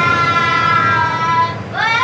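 A child's voice holding one long, high note that fades out about a second and a half in. Near the end a child's voice starts again, rising sharply in pitch.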